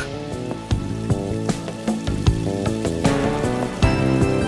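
Background music: steady notes changing every fraction of a second over short, sharp percussive strokes.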